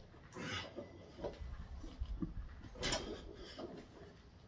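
A weightlifter's forceful breaths during a set of barbell back squats. Two breaths come about two and a half seconds apart, one with each rep.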